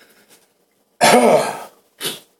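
A man clears his throat once, a voiced rasp about a second in, after faint rustling of thin Bible pages being turned.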